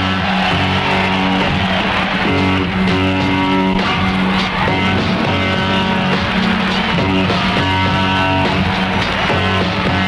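A rock band playing an instrumental passage, electric guitars strumming a repeating chord riff over bass and drums.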